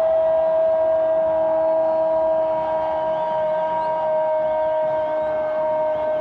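A horn held on one steady note for about seven seconds without a break, its pitch sagging very slightly, over faint crowd noise.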